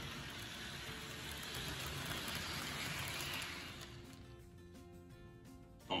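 HO-scale model train, a Proto 2000 Erie-built diesel pulling a Bachmann cylindrical hopper, running along the track with a soft whirring hiss of motor and wheels on rail. The hiss fades out about four seconds in as the train is brought to a stop. Quiet background music plays under it.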